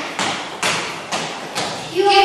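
Footsteps on a hard gym floor: four thuds about half a second apart, each echoing in the hall.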